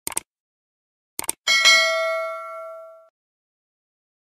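Sound effects for a subscribe-button animation: a quick double mouse click, another double click about a second later, then a bell-like notification ding that rings out and fades over about a second and a half.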